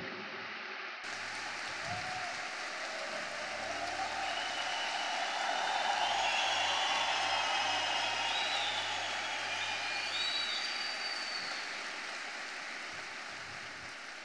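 Large audience applauding, the clapping swelling to its loudest about halfway through and then slowly dying away.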